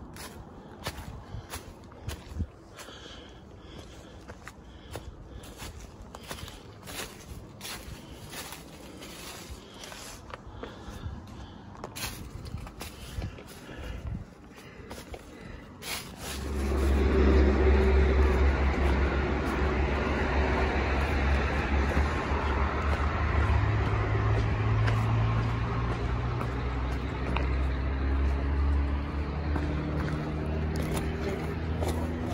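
Footsteps crunching on a rocky, leaf-strewn trail for the first half. About sixteen seconds in, a loud, steady rumble of passing motor traffic comes in suddenly and carries on, with engine tones that rise in pitch.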